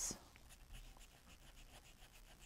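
Faint, quick repeated scratching of a dry paintbrush scrubbing acrylic paint onto a paper-covered wooden ornament, at about five strokes a second.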